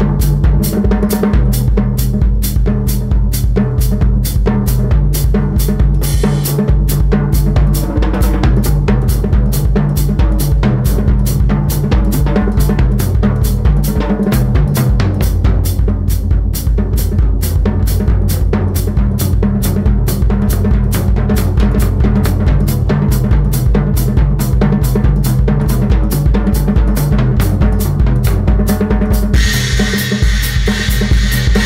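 Drum kit played with mallets in a semi-funk groove, the toms tuned to a scale so that the beat moves up and down in pitch as a melody, over the bass drum and a snare drum with its snares off.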